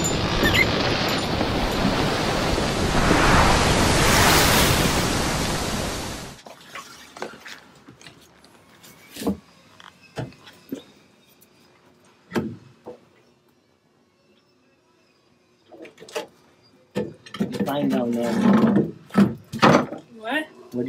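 A loud, steady rushing noise that cuts off suddenly about six seconds in. Scattered knocks and thuds follow, then a voice near the end.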